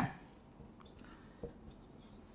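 Marker pen writing on a whiteboard: faint strokes and squeaks, with a light tap of the pen about one and a half seconds in.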